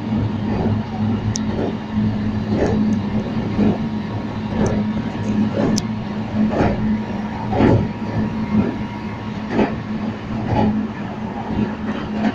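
Meitetsu electric train car heard from inside, running at a steady speed: a steady low hum with the wheels clacking over rail joints about once a second.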